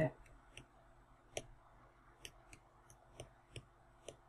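Faint, irregular clicks of a stylus tapping on a tablet screen while words are handwritten, around ten small taps spread unevenly.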